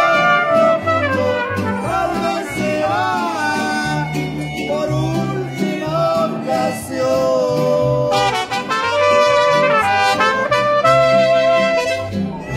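A live mariachi band playing, with trumpets carrying the melody over strummed guitars and a guitarrón plucking a stepping bass line.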